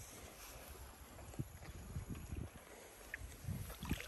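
A white zebu-type cow drinking from a muddy pond: soft, irregular gulps and water sloshing at its muzzle, a few louder ones near the end, over a low wind rumble on the microphone.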